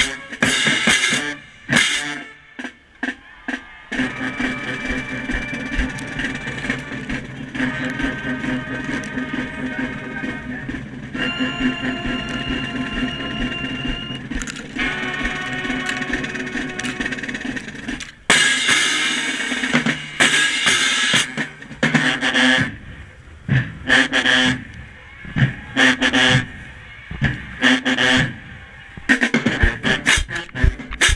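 Marching band playing. Sharp drum strikes open the section, then the horns hold sustained chords over the drums. About 18 seconds in, a loud crash from the cymbals right at the microphone starts a run of hard, rhythmic drum-and-cymbal hits.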